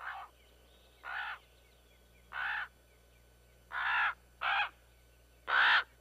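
Common ravens calling: six separate croaking calls about a second apart, two of them close together a little past the middle.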